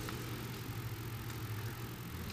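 Quiet room tone: a faint steady low hum with light hiss.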